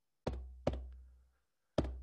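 Low, resonant knocks struck in pairs about half a second apart, like a heartbeat, each ringing out with a deep boom that fades over about a second; a further knock comes just before the end.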